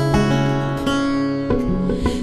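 Bağlama (Turkish long-necked lute) playing a short instrumental phrase of plucked notes that ring out, a few notes a second, in the gap between sung lines of a türkü.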